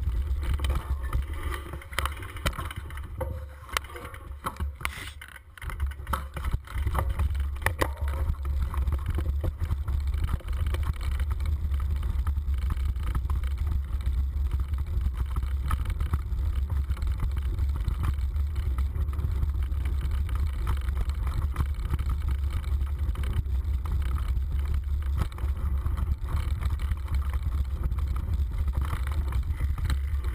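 Steady low rumble of wind and riding noise on a moving camera's microphone along a rough dirt trail. The rumble dips briefly about five seconds in, and a few knocks follow as the camera goes over rough ground.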